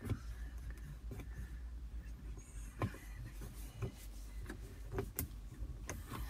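Faint handling noise: a low steady rumble with a few short sharp clicks and taps as a cocktail stick works along a car's plastic slatted centre-console cover.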